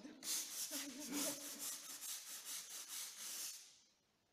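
Stiff-bristled floor brush scrubbing wet, soapy paving stones in quick repeated strokes. The scrubbing stops shortly before the end.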